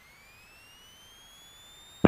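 Faint electrical whine in a light aircraft's intercom audio, rising steadily in pitch as the engine is opened up to takeoff power for the takeoff roll; such a whine follows engine speed, as alternator whine does.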